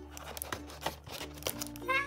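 Scissors snipping the packing tape on a cardboard toy box: a few sharp clicks and crinkles, over soft background music.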